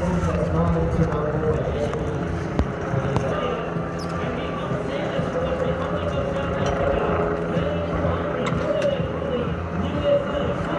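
Outdoor race-venue ambience: a loudspeaker announcer's voice and crowd noise over a steady low rumble, with a few short knocks.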